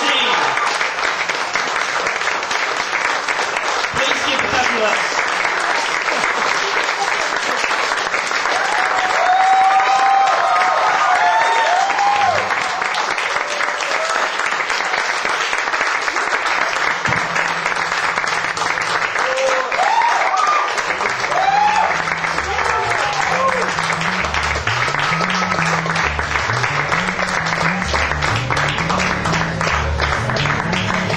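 Audience applauding, with a few shouts and whoops. From a little past halfway, low bass notes start playing a repeating figure under the clapping.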